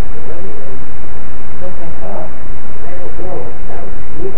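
Loud, steady hiss from a security camera's heavily amplified microphone, with faint, indistinct voices in it.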